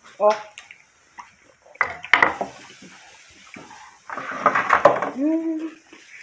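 Dishes and cutlery clinking at the table, with a few sharp clicks about two seconds in. About four seconds in, roughly a second of liquid pouring from a soda bottle into a glass.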